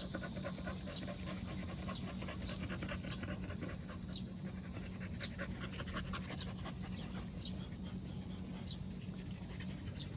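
Jindo dogs panting quickly and steadily, open-mouthed with tongues out.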